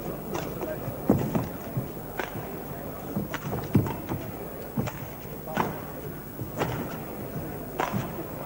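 Badminton rally: a shuttlecock struck back and forth with rackets, a sharp crack about once a second, over the steady murmur of the hall's crowd.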